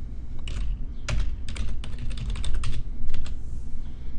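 Typing on a computer keyboard: an irregular run of keystroke clicks, quickest in the middle, as one short word is typed.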